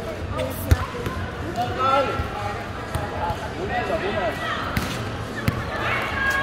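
Volleyball hits and bounces: a sharp smack about a second in, the loudest sound, and another near the end, amid players' voices calling out.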